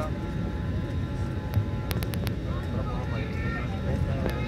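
Steady low rumble of an airliner's cabin noise while the plane stands at the gate, with a quick run of sharp clicks about two seconds in.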